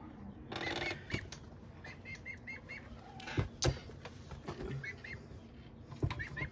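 Young chickens peeping in short, high chirps that come in little runs of three or four. A brief flap of wings comes about half a second in, and a single sharp tap a little past halfway.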